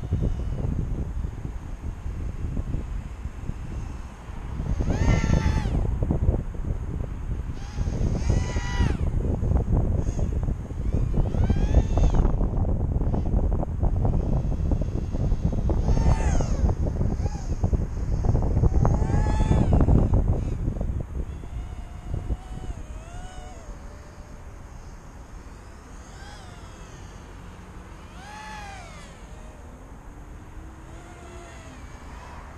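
Micro quadcopter's tiny Racerstar 1306 brushless motors on a 3S battery whining overhead. The pitch rises and falls in repeated sweeps as it is throttled and flies past. Heavy wind buffeting on the microphone eases after about two-thirds of the way through.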